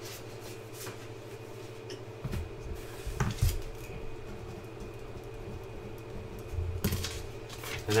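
Hands handling trading cards and a card envelope on a tabletop: a few soft knocks and rubbing sounds, with a faint steady hum underneath.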